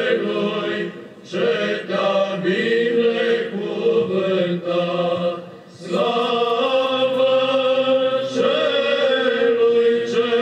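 A choir singing Orthodox church chant in long held notes, with short breaks for breath about a second in and again just past halfway.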